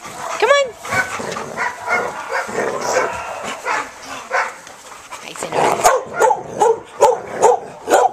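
Dogs in a group: a single high yelp about half a second in, then a quick run of barks, two or three a second, through the second half.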